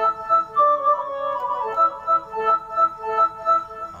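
Yamaha PSR arranger keyboard playing an edited dangdut suling (bamboo flute) voice with hall reverb and delay: a phrase of short, pulsing notes with a quick downward run about a second in. With the Mono function switched off, the notes overlap and ring into one another instead of cutting each other off.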